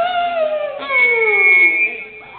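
A voice howling twice through the PA, each long drawn-out note sliding down in pitch, the second longer, with a thin steady high tone running under it.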